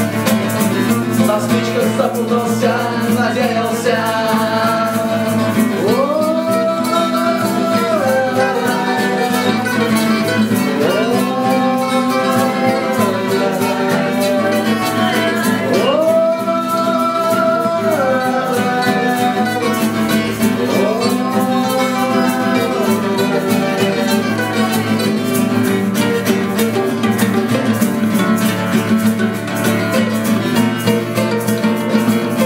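Live acoustic folk music from mandolin, acoustic guitar and a guitar played flat on the lap: steady strumming under a melody that slides up into long held notes four times, about every five seconds.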